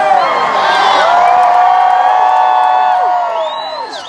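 Large arena crowd cheering and screaming, many voices holding long shouts together; the cheer swells early, stays loud, then falls away near the end.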